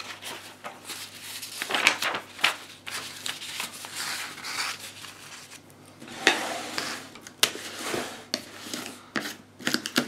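Paper rustling and handling noise as a magazine and a printed sheet are moved and laid flat on a table, with a few sharp knocks in the second half as a large plastic tub of Mod Podge is picked up and handled.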